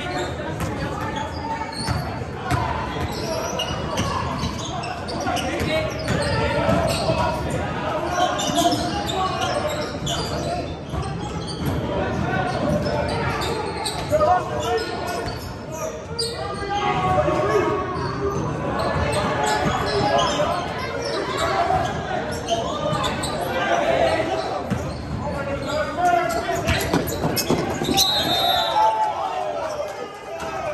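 Basketball game on a hardwood gym floor: the ball bouncing and dribbling in repeated knocks, with players and spectators calling out, echoing in a large gymnasium.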